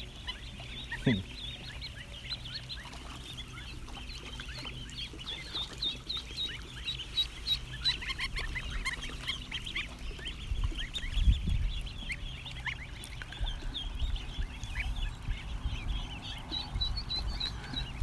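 A flock of ducklings and goslings peeping continuously, many short high-pitched chirps overlapping, with a few low bumps partway through.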